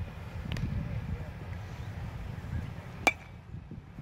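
A single sharp crack with a short metallic ring about three seconds in, over a steady low outdoor rumble of wind.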